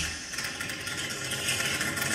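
Electroacoustic music for amplified cello and digital audio: a dense, crackling, rattling noise texture without a clear pitch follows a sudden loud burst.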